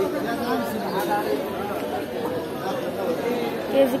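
Several people talking at once in a busy vegetable market, an unbroken hubbub of overlapping voices. A nearer voice speaks briefly near the end.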